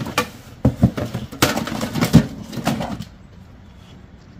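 Small cardboard box being handled and rummaged through, with loose small metal watch parts clattering inside: a run of uneven knocks and rattles that stops about three seconds in.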